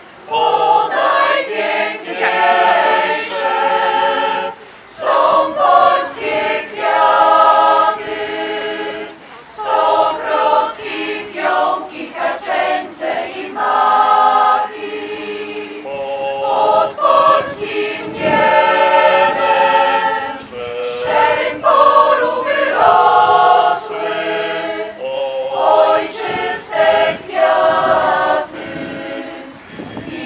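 Mixed choir of women's and men's voices singing a cappella, in phrases with short breaks between them.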